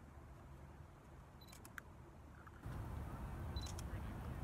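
Camera taking photos twice: a short high autofocus beep followed by sharp shutter clicks, about a second and a half in and again near the end. A louder low rumble sets in a little past halfway.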